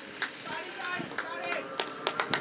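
Voices of cricketers calling out across the field as a run is taken, with a few sharp clicks in between.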